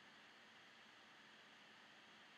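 Near silence: faint steady recording hiss.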